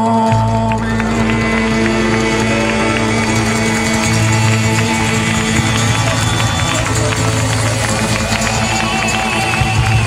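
Live rock band playing an instrumental passage, with no singing. A loud, steady bass line comes in just after the start under sustained chords.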